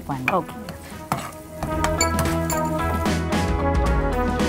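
Paneer cubes frying in hot oil in a pan, sizzling as a spatula stirs them, under steady background music.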